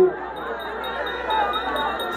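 Chime-like ringing tones held steady over a low hum, with faint voices beneath.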